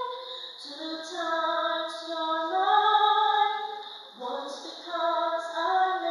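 A woman singing into a microphone, holding long notes and moving from note to note.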